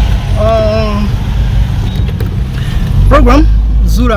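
Steady low rumble of a car's engine and tyres heard from inside the moving vehicle, with two short fragments of a man's voice, one near the start and one rising in pitch about three seconds in.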